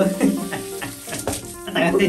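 Water spraying from a handheld shower head onto a wet dog's fur and the tile floor.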